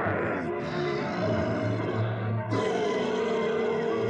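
Orchestral cartoon score playing, with an animal roar mixed in.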